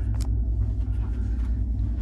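Steady low rumble of a cruise ship cabin's background machinery and ventilation, with one sharp click about a quarter second in.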